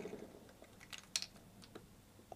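A few faint, light clicks and taps of a small plastic dropper bottle being handled and lifted off the cup of a stopped mini vortex mixer, most of them about a second in.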